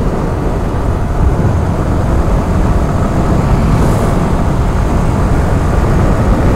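Wind buffeting the helmet-mounted microphone of a sport motorcycle on a highway at about 60–70 km/h, a steady loud rumble with the bike's engine running beneath it.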